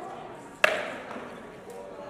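A single rattan sword blow landing on armour or shield: one sharp crack about half a second in, followed by a short ringing decay.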